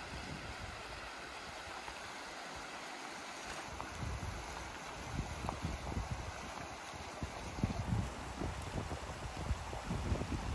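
Shallow river running over a gravel riffle: a steady rush of water. Low buffeting on the microphone comes in from about four seconds in.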